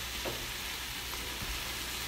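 Onions sizzling in olive oil in a slow cooker's browning pot, a steady frying hiss.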